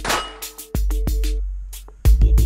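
A shot from a Canik TP9 SFx 9mm pistol right at the start, with a brief ring from a hit on an AR500 steel plate, over hip-hop background music with a heavy bass beat.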